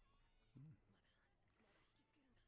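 Near silence, broken by one brief, low, voice-like sound about half a second in.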